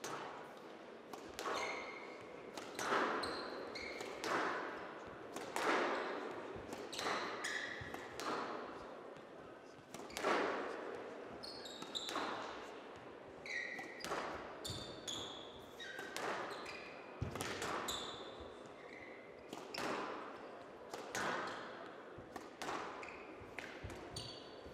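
A squash rally on a glass court: the ball is struck and hits the walls about every one and a half seconds, each hit ringing in the large hall, with short shoe squeaks on the court floor between shots.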